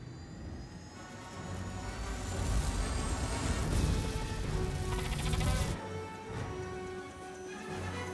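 Film score music with a loud swell of action sound effects that builds over a few seconds and cuts off sharply about six seconds in.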